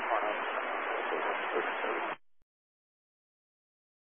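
A pilot's voice over VHF aircraft radio, muffled in static, reading back a takeoff clearance to the tower; the transmission cuts off suddenly a little after two seconds in.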